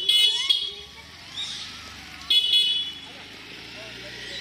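A vehicle horn honking: a blare that cuts off about half a second in, then a second short honk about two and a half seconds in. Faint squeals from the crowd of rhesus macaques come between the honks.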